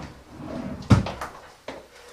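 A cupboard door knocking shut once, sharply, about a second in, with faint handling noise around it.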